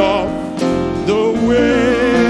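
A man singing a gospel hymn over instrumental accompaniment, his voice wavering on the notes and holding a long note in the second half.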